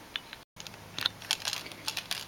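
A few light, sharp clicks and ticks from hands handling a small metal door courtesy light switch and a piece of stainless steel wire. The sound drops out completely for an instant about half a second in.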